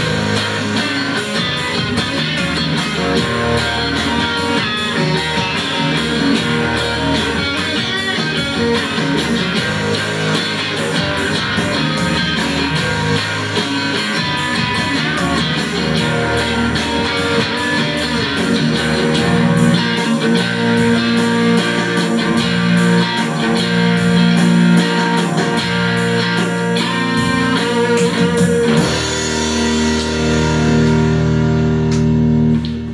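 Fender electric guitar played live with an overdriven tone in a blues-rock instrumental, over a steady beat, heard through a camera's built-in microphone.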